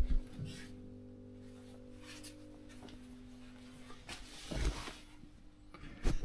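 Steady low electrical hum made of a few held tones, which fades out a little past halfway. About four and a half seconds in there is a brief rustle of handling.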